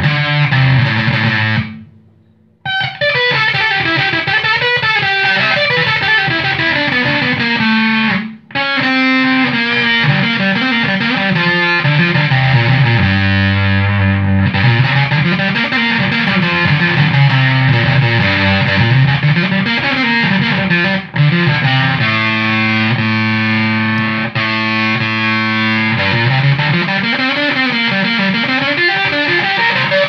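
Heavily distorted fuzz tone from a Woolly Mammoth–style fuzz pedal built with Russian germanium transistors, switched on, with low riffs full of sliding notes and a few held notes. The playing cuts off abruptly about two seconds in and stops briefly again about eight seconds in.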